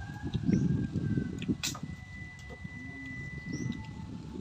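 Close-up chewing and crunching of firm, unripe Indian mango slices, loudest in the first second and a half, with a sharp click shortly after; faint bird calls in the background.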